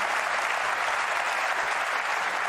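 Audience applauding steadily for a well-played pot.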